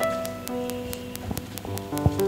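Slow instrumental music on an electronic keyboard: held notes and chords that change in steps, over a fast, even ticking about five times a second.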